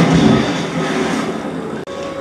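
Motorboat engine running, a steady rumble that starts suddenly and breaks off for an instant near the end.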